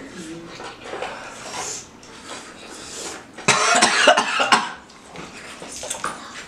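A man coughing hard several times in a short fit about three and a half seconds in, after softer breathing sounds. The coughing comes while he has a Carolina Reaper pepper lollipop in his mouth.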